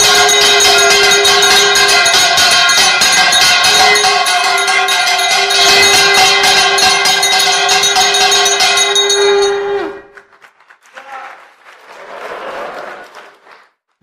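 Temple bells ringing in a rapid, continuous clangour over a steady held horn-like tone. Both stop abruptly about ten seconds in, leaving only faint sound for the last few seconds.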